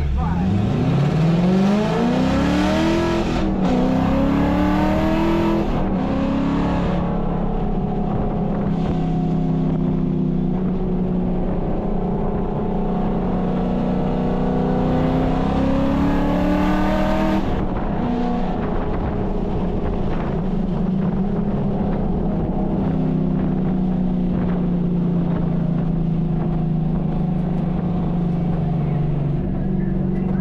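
Cabin sound of a 2013 Mustang GT's 5.0-litre V8 under full throttle from a standing start: the engine note climbs, drops at an upshift about three seconds in, and climbs again. It then runs at speed with heavy wind noise until about eighteen seconds in, when the wind noise falls away and the engine settles to a steady lower note as the car eases off.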